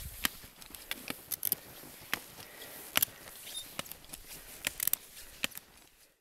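Irregular crisp clicks and crunches, about a dozen, some coming in quick little clusters, over a faint hiss.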